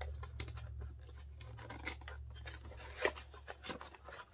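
White paper bag and cardboard box being handled and opened: paper rustling and scraping, with a few sharper clicks in the second half, over a low steady hum.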